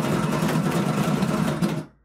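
Bubble craps machine tumbling the dice in its dome: a steady motor buzz with the dice rattling, which stops shortly before the end.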